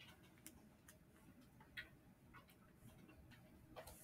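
Near silence with a few faint, irregular ticks and taps of a pen on notebook paper as a line segment and its endpoint dots are drawn.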